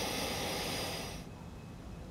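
Steady hiss of old soundtrack noise, with faint steady high tones, that cuts off a little over a second in and leaves a quieter background.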